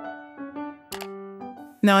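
A short melodic transition jingle of clear, bell-like notes stepping from one pitch to the next, with a single sharp click about a second in, then a few more short notes.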